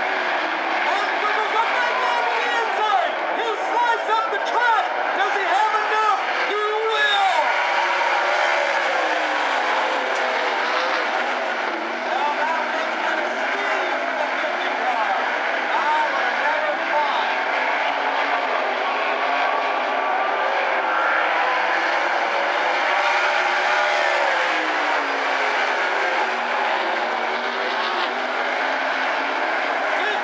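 Several 360 sprint cars' V8 engines racing on a dirt oval. Their pitch keeps rising and falling as they pass, accelerate and lift, with overlapping engines and no break.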